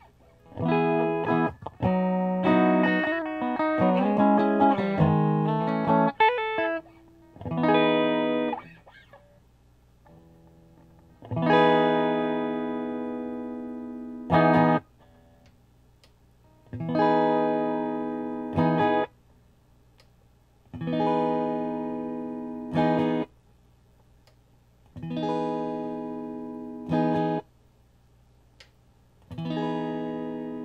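Yamaha Pacifica 312 electric guitar with newly fitted GFS pickups being played: a quick run of short notes, then a series of strummed chords, each left to ring for two or three seconds and then cut off. The tones are not so good, as the pickup height still needs adjusting.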